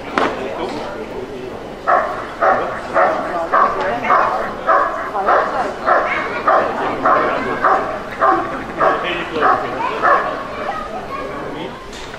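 Dog barking in a steady series, about two barks a second, starting about two seconds in and stopping near the end, after a short sharp sound at the very start.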